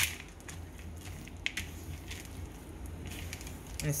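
Spatula stirring chocolate chips into thick cookie dough in a bowl: soft squishing with scattered small clicks and scrapes, and a sharp click right at the start.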